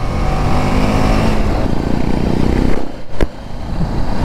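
BMW G 310 GS single-cylinder motorcycle engine under way, its note rising as it accelerates, over a rush of wind and road noise. About three seconds in the sound dips briefly, with a sharp click.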